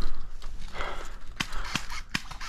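Crunching and rustling of dry fallen leaves as someone moves through them, with two sharp clicks in the second half.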